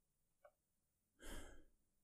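A man's short, soft sigh close to the microphone, about a second in, in otherwise near silence; a faint click comes just before it.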